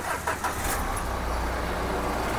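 Renault Lodgy's 1.5-litre four-cylinder diesel engine being started, catching within the first second and settling into a steady low idle.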